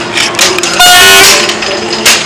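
A child blowing a plastic toy horn: a loud, steady blast about a second in.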